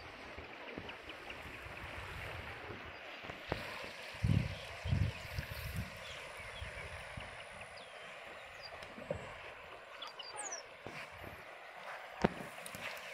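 Steady rush of a broad, muddy river flowing, with low gusts of wind buffeting the microphone about four to five seconds in.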